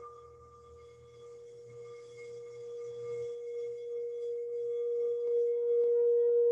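A singing bowl's steady ringing tone, carrying on from a strike just before and then swelling gradually louder.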